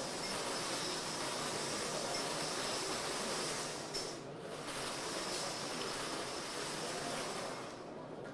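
Steady background hiss, with a brief dip about four seconds in.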